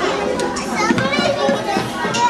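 Children's voices over general chatter, several people talking and calling out at once.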